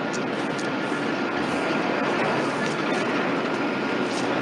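Steady mechanical drone of film-soundtrack factory machinery ambience, even and unbroken, with a faint thin tone held over it.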